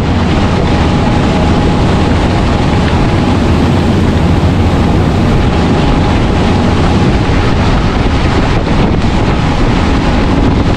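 Tour boat running at speed: a steady, loud rush of wake water and engine noise, with wind buffeting the microphone.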